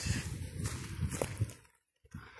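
Footsteps through tall, wet grass, the grass rustling against the legs, with one sharp click about a second in; the sound fades away near the end.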